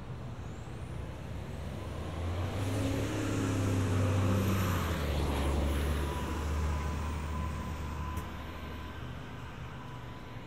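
City transit bus driving past close by. Its engine rumble swells to a peak about four to five seconds in and then fades away, with a faint high whine gliding above it.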